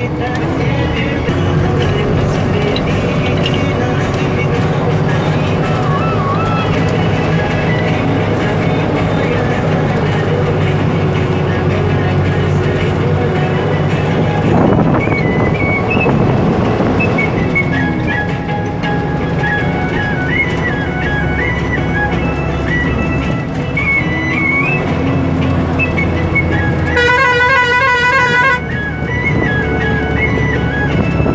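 Vehicle engine running steadily under a moving ride, with music playing over it from about halfway through. Near the end a horn sounds once for about a second and a half.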